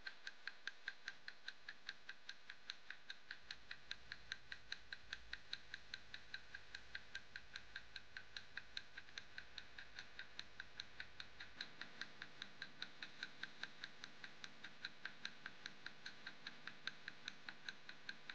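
A clock-tick countdown sound effect: faint, even ticks at about three a second, marking the time left to solve the puzzle.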